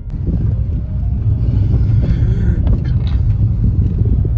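Car driving, heard from inside the cabin: a steady, loud low rumble of road and engine noise.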